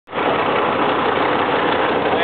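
Diesel engine of a 2005 Kenworth T300 truck idling at about 500 rpm, heard from inside the cab as a steady noise.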